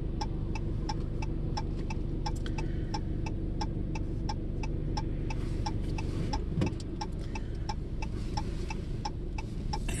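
A car's turn-signal indicator ticking evenly, a little over two clicks a second, over the low hum of the idling engine while the car waits at an intersection to turn.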